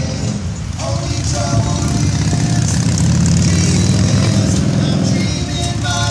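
Motorcycle engine running as it passes on the road, a low rumble that builds, is loudest in the middle and eases near the end, with music playing over it.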